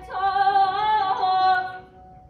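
Female vocalist singing Persian classical avaz in Abu Ata: one long held phrase that wavers slightly in pitch and fades out near the end.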